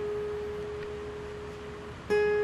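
Background guitar music: a single held note rings on and slowly fades.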